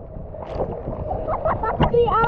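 Wind and water rushing on a camera riding low over a boat's wake, with short voices calling out in the second half.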